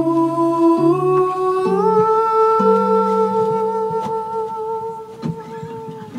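Live acoustic song: a voice holds one long wordless hummed note that steps up in pitch twice over the first two seconds and is then held, over plucked acoustic guitar.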